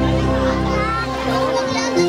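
Live band music through a stage PA: sustained electronic keyboard notes over a steady bass. In the second half, voices call out over the music.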